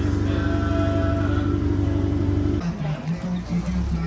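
Volkswagen Saveiro pickup running steadily at idle while its raised air suspension is awaited. About two and a half seconds in, the hum stops abruptly and a different, pulsing lower sound follows.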